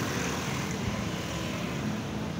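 Steady engine noise of a passing motor vehicle.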